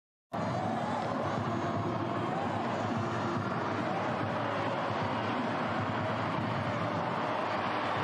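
Steady noise of a large stadium crowd during a women's football match, with faint voices singing or chanting within it. It starts suddenly just after the start and holds at an even level.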